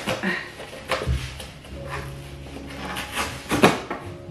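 Large cardboard shipping box being handled and turned over: a few knocks and scrapes of the cardboard, a dull thump about a second in and the loudest knock near the end.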